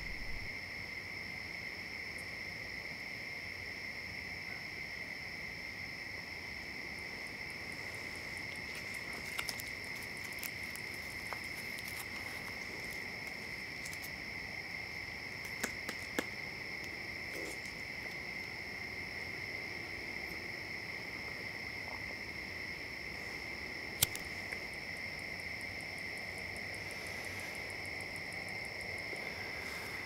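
Steady night chorus of crickets, a constant high chirring in two even bands. A few faint clicks and ticks are scattered through it, one sharper click about 24 seconds in.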